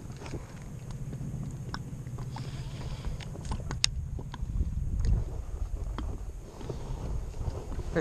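Low, steady wind rumble on the microphone, with scattered small clicks and taps from handling a baitcasting reel and rod in a kayak.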